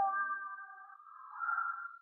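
Soft background music of held tones, fading away with a brief swell near the end, then cutting off suddenly.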